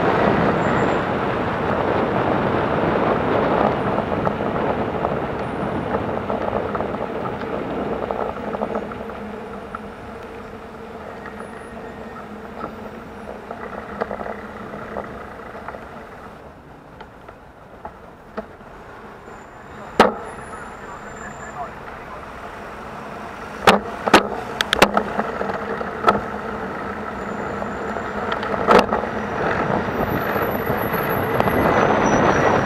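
Wind rushing over the microphone, with surrounding car traffic, while riding among cars. It eases to quieter idling traffic as the ride slows in a queue. A few sharp clicks or knocks come in the second half: one about two-thirds in, a quick cluster a few seconds later, and one more near the end.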